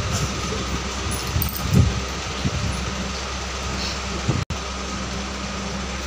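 Steady mechanical hum with a low drone, like a room fan or cooler running. The sound cuts out for an instant about four and a half seconds in.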